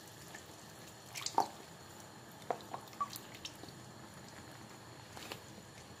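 Liquid cream poured from a carton into tomato sauce simmering in a frying pan: a few faint, separate plops and drips over a low, steady background.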